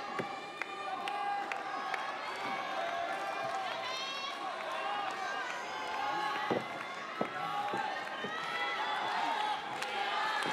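Arena crowd calling out to the wrestlers, many voices overlapping, with a few sharp claps or knocks scattered through.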